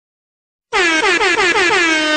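DJ air horn sound effect: after a short silence, a stutter of rapid short horn blasts, about five a second, each dropping in pitch, running into one long held blast.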